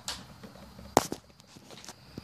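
A single sharp click about a second in, with a fainter tick just after, over quiet room noise: hands handling the transmitter's antenna fitting.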